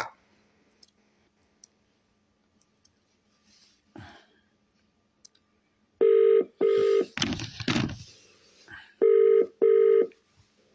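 A telephone ringing tone in a double-ring pattern: two short ring pairs about three seconds apart, the first about six seconds in, with a brief noisy sound between them.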